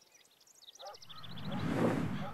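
Sound-designed outdoor ambience: a run of short high bird chirps in the first second, then a swelling whoosh with a low hum that rises and peaks near the end.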